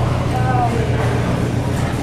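Steady low hum of supermarket refrigerated display cases and ventilation, with a brief snatch of a voice about half a second in.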